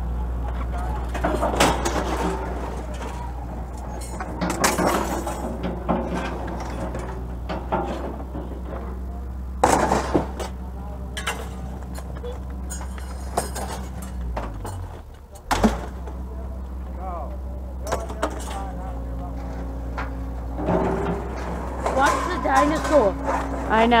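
Scrap metal clanking and crashing as pieces are pulled off a trailer and tossed onto the pile, a few separate crashes, over a steady low engine hum.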